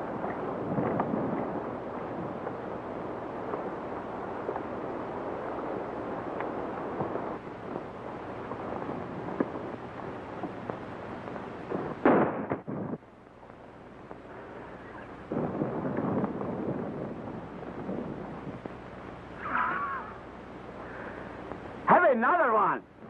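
Several horses galloping off, a dense patter of hoofbeats on an old, hissy film soundtrack, broken by a loud short burst about halfway through. Near the end a man laughs briefly.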